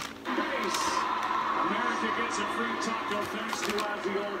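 Soundtrack of a video playing from a television's speakers across a small room: music with voices, at a steady level.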